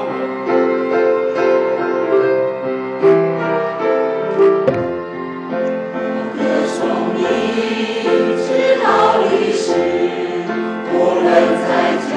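Mixed choir singing a hymn in Chinese with piano accompaniment, in long sustained phrases. A single handling bump on the microphone comes about halfway through.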